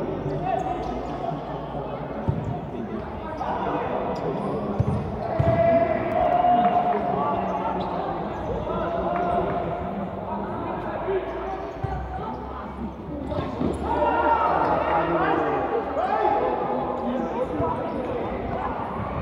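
Futsal ball being kicked and bouncing on a hard indoor court, a few sharp knocks, under players and spectators shouting in a reverberant gymnasium.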